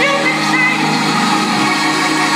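Live gospel music with sustained keyboard chords held steady while the lead vocal mostly rests.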